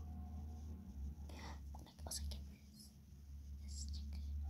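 A girl whispering softly in short breathy bursts, over a low steady hum.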